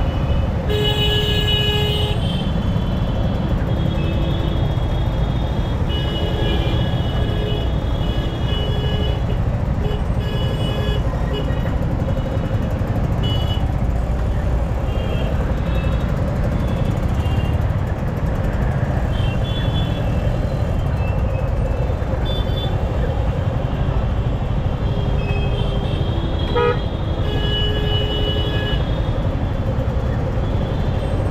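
Vehicle horns honking again and again in stopped traffic: several horns of different pitch, some short toots and some held for a second or two, over a steady low rumble of engines.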